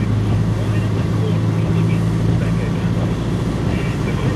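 Steady low drone of a car's engine and road noise heard from inside the moving car's cabin.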